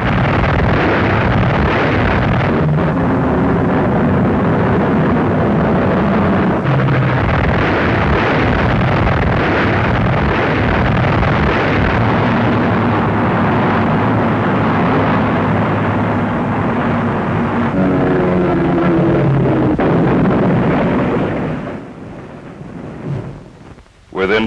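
Propeller aircraft engines droning in a loud, rumbling film sound-effects track, with low engine tones rising and falling in pitch over a dense roar. The track fades out about two seconds before the end.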